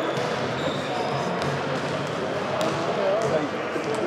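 Basketballs bouncing on a hardwood gym floor, a few separate sharp bounces, over the chatter of players' voices in the background.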